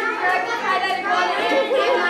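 Several children's voices talking at once: overlapping chatter in a room full of kids.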